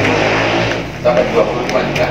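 Indistinct men's voices talking in a room, with a low steady hum underneath in the first second.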